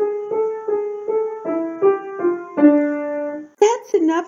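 Piano playing a simple melody of single notes, about ten in a row, ending on a longer, lower held note that stops shortly before the end.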